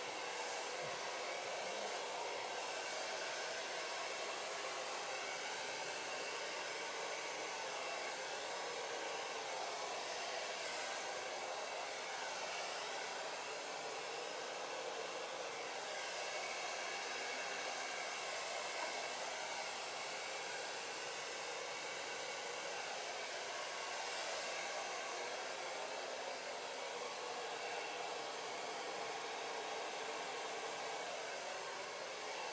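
Large handheld hair dryer switched on and running steadily, blowing wet acrylic paint across a canvas in a Dutch pour to spread it into petals.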